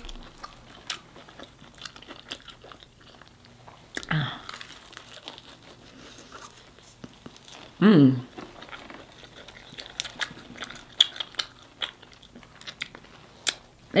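Close-up chewing and biting of crispy fried chicken, with scattered short crunches and wet mouth clicks. A short hummed "mm" comes about four seconds in and again near the middle.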